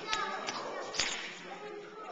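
Sharp smacks of soccer balls being kicked on a hard gym floor: a few in quick succession, the loudest about a second in, over faint children's voices.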